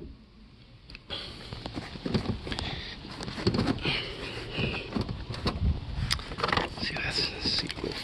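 Handling noise inside a junked car: rustling with many small clicks and knocks as hands and camera move over the interior trim, starting about a second in, with some indistinct speech.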